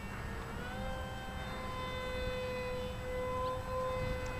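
Electric motor of a Grayson Super Mega Jet-powered RC foam F-15 model whining in flight overhead. Its pitch rises about half a second in, then holds steady.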